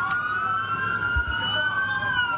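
Police car siren wailing: its pitch rises, holds high while still climbing slowly, and starts to fall right at the end.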